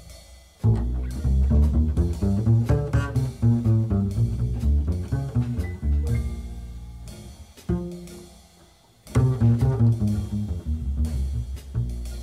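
Slow funky jazz blues from a small combo, with a plucked double bass standing out. The playing comes in phrases broken by short pauses, one just after the start and a longer one about two-thirds of the way through.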